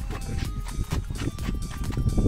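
Background music with a regular beat and steady held tones.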